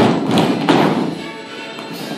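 Music for a group character dance, with heavy thuds of the dancers' character shoes stamping on the wooden studio floor, loudest during the first second.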